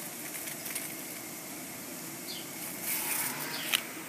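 Large cucumber leaves and vines rustling as they are pushed aside by hand, with a few sharper rustles near the end over a steady background hiss.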